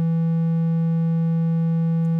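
A pure triangle wave from the Serum software synthesizer, sounding as one steady held note. It has a bit more harmonics than a sine wave: faint overtones above a strong low fundamental.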